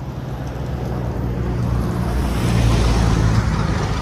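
Motorcycle engine running under way, heard from the pillion with road and wind noise; the engine note grows louder over the first three seconds.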